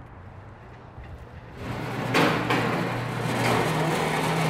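Metal flatbed hardware-store cart rolling and rattling over a concrete floor, starting a little over a second and a half in, with a steady low hum beneath.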